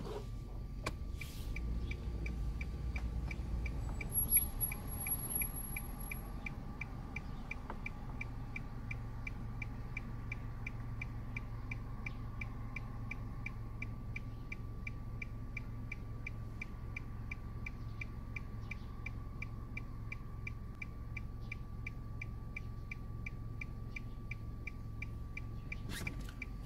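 A car's turn-signal indicator ticking steadily and evenly inside the cabin over the low rumble of the idling engine, with a faint steady high whine behind it.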